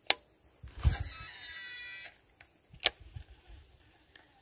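A fishing cast: a sharp click, a swish, and about a second of thin whirring from the reel spool as line pays out. Another sharp click follows a couple of seconds later.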